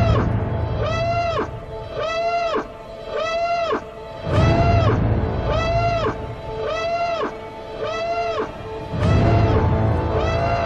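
Film trailer music: a pitched, alarm-like tone that rises and falls, repeating about once a second, over deep bass swells at the start, about halfway through and near the end.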